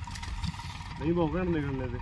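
Tractor running at a distance as it pulls a sugarcane planter along the furrows, heard as a low rumble, with a person's voice briefly about a second in.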